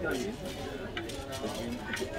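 Indistinct voices talking, with a single faint click about a second in; no other sound stands out.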